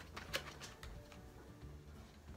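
A few faint clicks and taps of plastic test sticks being handled and set down in the first half second, then quiet room tone with a faint low hum.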